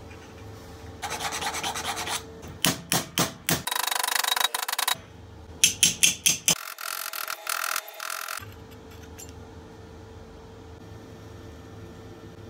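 A hammer tapping folded flanges of thin sheet metal against a steel plate, in two quick runs of about five blows each. Stretches of rough scraping noise come before, between and after the blows.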